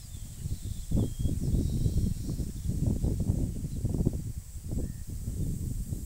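Low, uneven, gusting rumble of wind on the microphone, with a few faint bird chirps in the first second.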